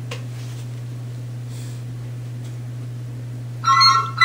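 A steady low hum, then near the end a short electronic tone of several pitches from a mobile phone placing a test call to a rewired 802 rotary telephone. There is no bell ring from the telephone itself.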